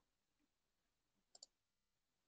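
Near silence, with a faint computer mouse click, heard as two quick ticks, about one and a half seconds in.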